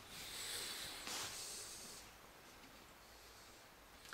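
Two faint breaths close to the microphone in the first two seconds, then near silence: room tone.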